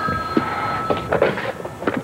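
Telephone ringing with a steady tone that cuts off about a second in, followed by a few clicks and knocks as the handset is picked up.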